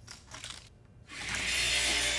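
A rushing whoosh transition effect that swells up about a second in and then holds steady, after a near-quiet start.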